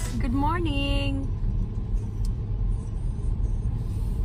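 Steady low rumble of a car cabin on the move, engine and road noise. A short voiced sound with gliding pitch comes in the first second.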